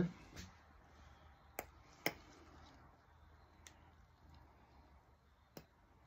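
Light, sharp clicks and taps of plastic resin tools and mixing cups being handled, about five ticks spread irregularly over a quiet room hum.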